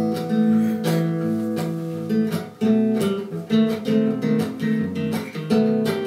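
Acoustic guitar played with the fingers: ringing notes struck about every second at first, then after a brief dip about two and a half seconds in, quicker, shorter plucked notes.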